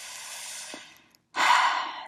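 A woman breathing between phrases. A long, soft breath comes first, then a brief silence, then a louder breath about one and a half seconds in.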